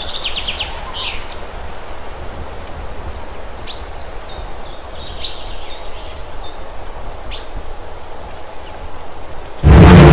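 Steady low rumble of an open safari jeep driving along a forest dirt track, with several short bird chirps over it, including a quick trill near the start. Loud music cuts in just before the end.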